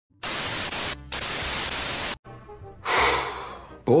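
Loud television static hiss for about two seconds, with a brief dip near one second, then cut off suddenly. Faint music follows, with a short breathy exhale about three seconds in.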